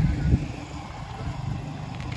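Low hum of a motor vehicle's engine, fading about half a second in and then running on faintly.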